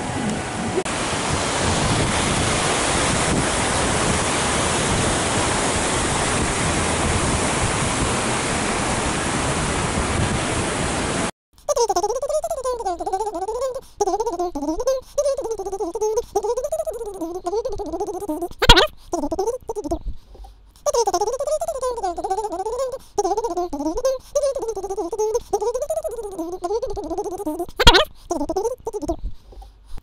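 Steady rushing water of an outdoor fountain for about the first eleven seconds. Then the sound cuts off suddenly and a wavering melody takes over, broken by two sharp clicks.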